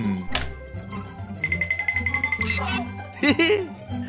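Cartoon background music with a steady low underlay; a sharp click comes early, then a high electronic beeping trill for about a second, and brief wordless vocal sounds near the end.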